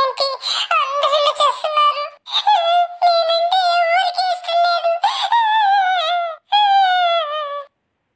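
A high, pitch-shifted cartoon character's voice singing a tune in wavering held notes, in three or four phrases separated by short breaks.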